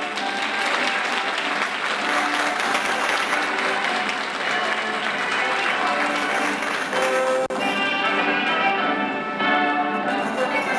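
Audience applauding over music as a stage curtain opens; the clapping dies away about seven and a half seconds in, leaving the music playing on.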